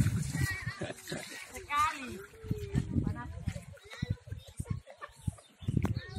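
Scattered voices of people bathing, with a short laugh about a second and a half in and a few high calls.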